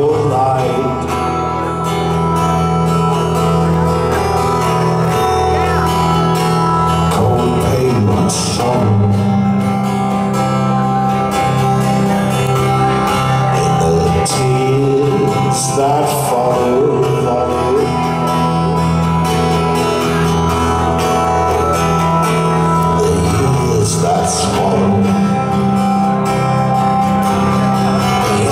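A live neofolk band playing a slow song: strummed acoustic guitar over held keyboard chords and electric guitar, with a man singing at times.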